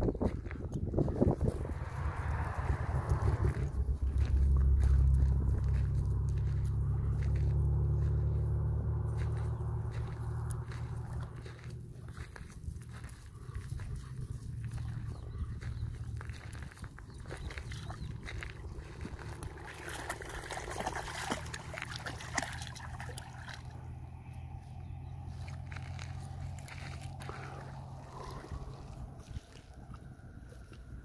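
Footsteps crunching on a gravel path, with a low, steady drone that swells over the first few seconds and fades away by about halfway through.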